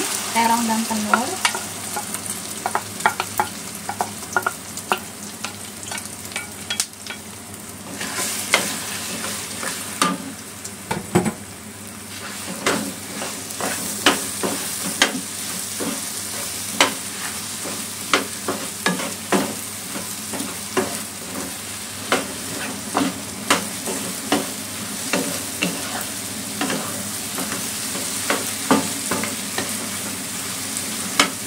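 Diced eggplant coated in beaten egg sizzling as it fries in oil in a nonstick wok, tipped in at the start and then stir-fried. A spatula scrapes and taps against the pan over and over, more often in the second half.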